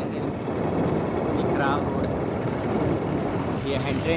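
Steady rumbling wind and road noise from a vehicle moving along a rough, broken dirt road.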